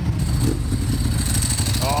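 A motorcycle engine running close by with a steady low rumble of rapid firing pulses. A man's voice comes in near the end.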